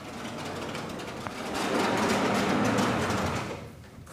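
Vertical sliding lecture-hall blackboard panels being pushed along their frame: a steady rolling rumble that swells about halfway through and fades away near the end.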